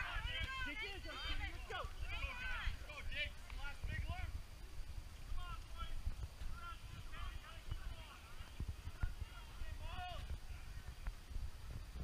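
Faint voices of spectators calling out at a distance, over a steady low rumble on the microphone.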